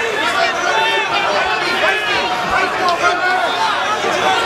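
Fight crowd in an arena: many overlapping voices chattering and shouting at a steady level.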